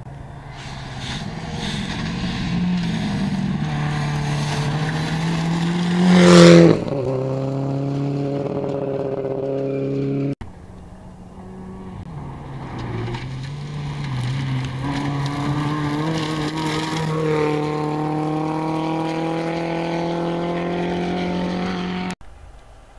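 Rally cars on a gravel stage. The first car runs hard toward the listener and passes close, loudest about six and a half seconds in, and its engine note then drops as it goes away. After an abrupt cut a second car, a Ford Fiesta rally car, approaches under power, its engine note rising and growing louder.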